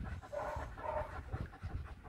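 A wolfdog panting softly, a string of short breaths.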